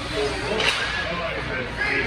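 One sharp crack of a hockey stick striking the puck, about two-thirds of a second in, over arena voices and the rink's hum.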